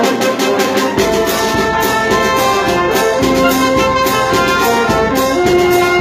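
Wind band playing a symphonic march: trumpets and trombones carry sustained melody notes over low brass and a steady bass-drum beat, with the bass filling out about a second in.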